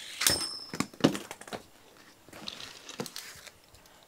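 Sharp clicks and knocks of a Beyblade spinning top and its metal disc being knocked about and handled. The first knock, near the start, has a brief high metallic ring.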